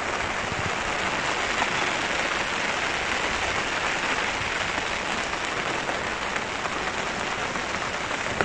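Heavy summer-storm rain pouring down steadily, an even hiss of rain with no breaks.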